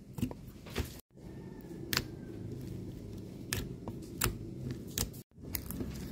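Soft slime being pressed and kneaded by fingers in a plastic tub, giving scattered sharp little pops as air pockets burst under the fingers: the 'super good pops' of a soft slime.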